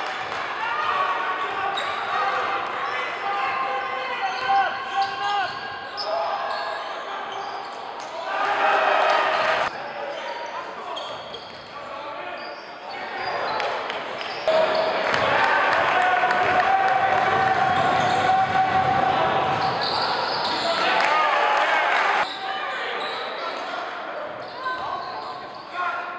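Live sound of an indoor high-school basketball game in a gym: spectators' voices and shouts, with a basketball bouncing on the hardwood floor. The sound changes abruptly several times where game clips are cut together.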